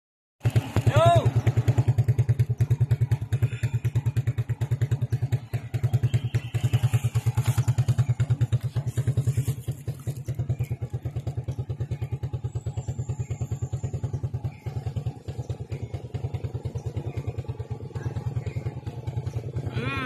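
Motorcycle engine running steadily at low revs, a low even pulsing of several beats a second.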